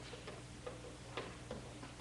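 Faint, irregular rustles and small clicks from people shifting and handling prayer books in a quiet church, over a low steady hum.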